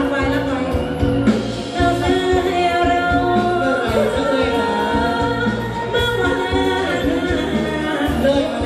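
Live Thai ramwong band music: a singer's voice over a steady beat, with backing instruments.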